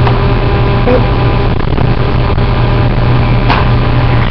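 Steady loud hiss with a continuous low hum underneath, with no distinct event in it.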